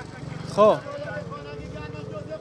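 A steady low engine drone with a fine, even pulse runs throughout, under one short spoken word.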